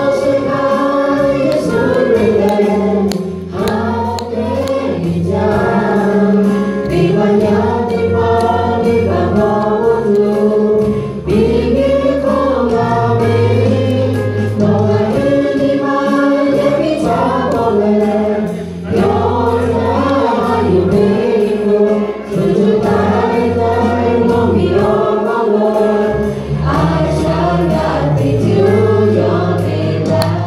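A group of four women singing a song together in harmony into microphones, backed by a live band with a steady bass line.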